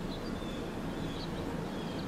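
Outdoor ambience: small birds chirping in short high calls over a steady low background rumble.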